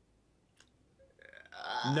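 Near silence, then a loud, drawn-out voice starts about a second and a half in.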